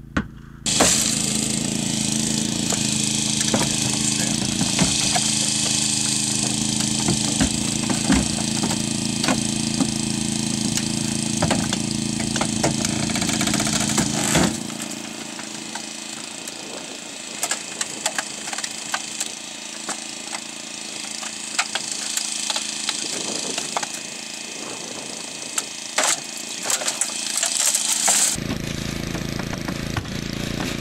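Hydraulic rescue-tool power unit running steadily while a Holmatro hydraulic tool works a car door, with scattered sharp cracks and snaps of metal and plastic as it bites. About halfway through the low engine drone drops away, leaving a steady higher hiss and more cracks.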